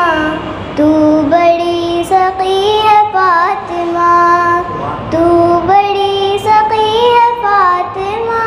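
A young girl singing a naat solo into a microphone: one voice holding long notes with sliding, ornamented turns, and short breaks between phrases.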